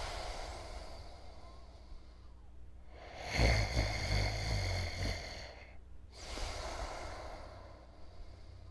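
A man snoring in his sleep in slow, heavy breaths: three long snores about three seconds apart, the middle one loudest.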